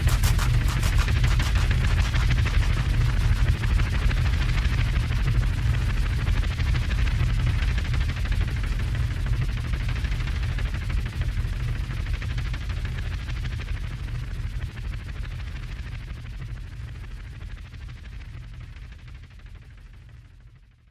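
Closing of an electro track: a dense, very fast rattling crackle over a held low bass, slowly fading out.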